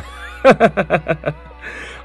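A man laughing: a quick run of short, falling 'ha-ha' bursts about half a second in, over background music.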